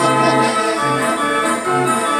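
Merry-go-round band organ playing, with many held notes over a low bass note that comes in about once a second. The music is off tune and weird.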